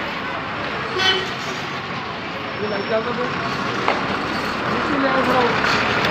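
Road traffic noise with people talking in the background, and a short vehicle horn toot about a second in.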